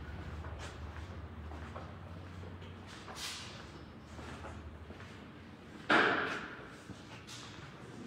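Low hum and the faint room sound of a large tiled hall, with a few light ticks and one loud sudden thud about six seconds in that rings out briefly in the room's echo.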